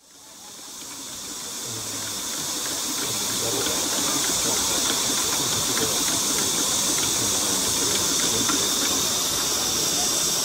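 Live-steam Gauge 3 model of an LMS Stanier 'Black Five' 4-6-0 standing with steam hissing steadily. The hiss swells over the first few seconds, then holds level.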